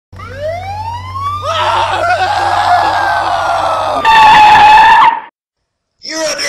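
Police siren winding up and wailing, with a noisy rush joining it about one and a half seconds in. At about four seconds a loud held cry takes over and cuts off suddenly a second later.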